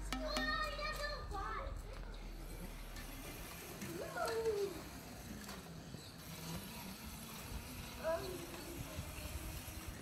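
Children calling and shouting as they play. A louder rising-and-falling call comes about four seconds in and another about eight seconds in. Background music stops in the first second or two.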